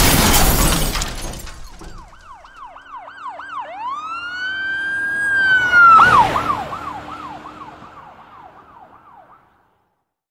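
A car crash impact with shattering glass right at the start, fading over a second or so. It is followed by an emergency vehicle siren: rapid yelps, then a long rising wail, a sudden loud burst about six seconds in, and more yelps fading out just before the end.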